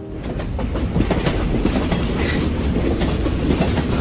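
Running noise of a moving train heard from inside a passenger car: a steady low rumble with irregular clicks and knocks.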